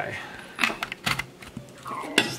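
Chef's knife cutting through a pie's crust in a foil pan: a few light, quick clicks and crunches as the blade presses down.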